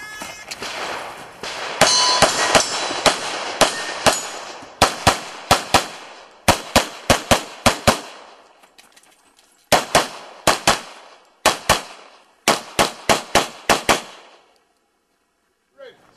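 Handgun firing in rapid strings: about thirty sharp shots in quick bursts, with short breaks between strings, stopping a couple of seconds before the end.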